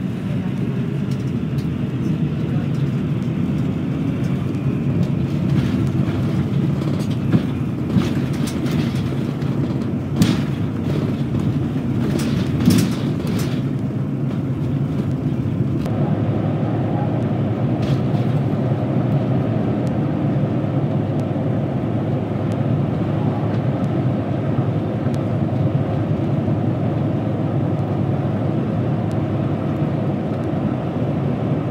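Interior noise of a Yamako highway bus on the move: a steady low rumble of engine and road noise, with a few sharp clicks or rattles near the middle. About halfway through the rumble changes abruptly and becomes fuller.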